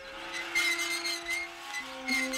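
Drama background score: soft sustained tones held under a high, slightly wavering note.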